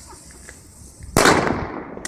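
A firework going off with a single loud bang a little over a second in, trailing off over about half a second.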